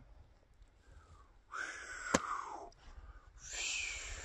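Two breaths from a man close to the microphone: a long breathy exhale starting about one and a half seconds in, then a sharper, hissier breath near the end, with a single sharp click between them.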